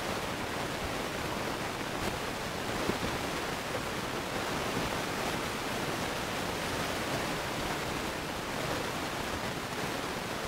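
Steady, even hiss of background noise in the recording, with no other sound standing out.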